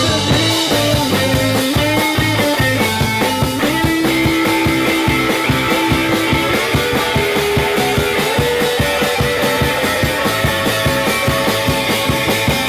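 Live rock band playing an instrumental passage: electric guitars holding and shifting sustained notes over a steady drum-kit beat.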